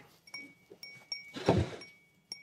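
A small stemmed glass clinking about four times, each a light chink with a brief high ring. A short vocal sound comes about halfway through.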